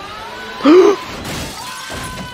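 A wooden chair smashed to pieces: one loud crash about two-thirds of a second in, followed by breaking noise.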